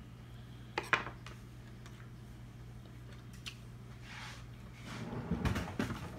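Small handling sounds as a tomato slice is taken off a wooden cutting board to be tasted: a sharp click about a second in, a few faint clicks, then a cluster of small noises near the end. A low steady hum runs underneath.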